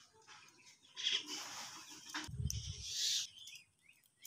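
A disposable lighter clicked and its flame hissing as it is held to a bundle of thin wooden sticks until they catch fire, in a few short hissing bursts. A brief low rumble comes a little past the middle.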